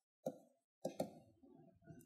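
Faint taps of a stylus on a pen tablet during handwriting: three short taps in the first second.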